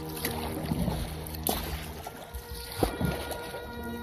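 Kayak paddle dipping and splashing in calm water, with a couple of sharper splashy knocks about one and a half and nearly three seconds in. Faint background music runs underneath.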